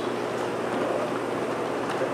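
Steady room tone in a meeting chamber: an even hiss with a faint low hum and no speech.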